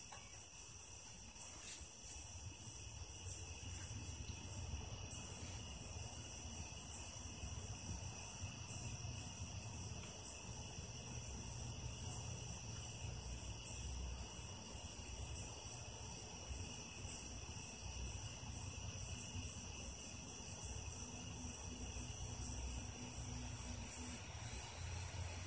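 Faint steady high-pitched whine or trill with a low rumble beneath and a few faint ticks.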